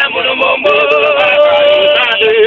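Music with a voice singing, holding one long steady note from just over half a second in.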